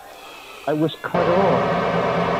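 A voice speaking over a steady hiss, starting a little over half a second in: a sampled spoken-word recording in an electronic track.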